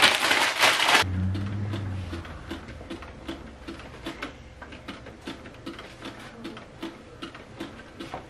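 Loud rustling of paper and fabric being handled for about the first second, then faint background music with a steady beat.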